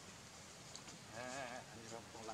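Macaque giving a single short, quavering, bleat-like cry of about half a second, a little past the middle.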